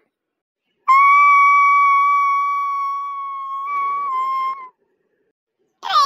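A single high, steady whistle tone held for nearly four seconds. It slowly fades and dips slightly in pitch just before it stops.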